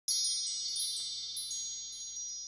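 A cluster of high, bright chimes struck all at once, ringing on and slowly fading, with a few light tinkles along the way.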